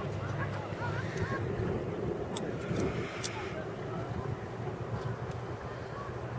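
Distant traffic as a low, steady rumble, with faint indistinct voices and a brief rush of noise about three seconds in.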